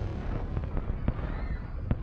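Film sound effects: a deep steady rumble with two sharp cracks, one about a second in and a louder one near the end.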